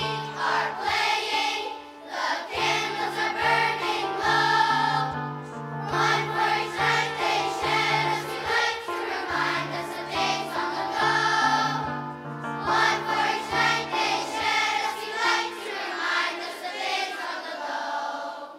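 Large children's choir singing together, with short breaths between phrases.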